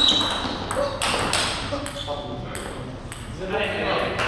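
Table tennis ball struck, a sharp ping at the start, followed by a few more knocks as the rally plays out, with a voice in the second half.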